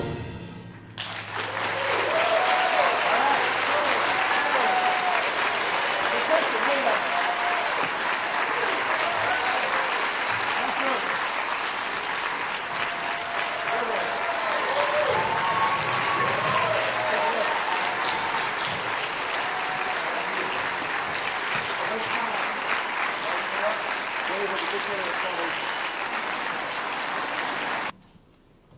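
Concert band's final chord cutting off right at the start, then audience applause that builds in about a second and holds steady, with scattered voices calling out from the crowd.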